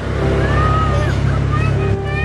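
A loud, steady low rumble that begins suddenly at the start, with faint voices over it.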